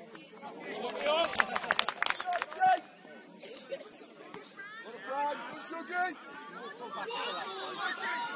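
Players and spectators shouting across an open grass football pitch during play. About a second in, a burst of rapid crackling lasts nearly two seconds.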